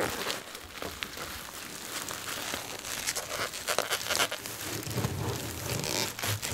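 Bubble wrap crinkling and crackling in irregular bursts as a bubble-wrapped glass lamp globe is lowered and pressed down into a cardboard shipping box.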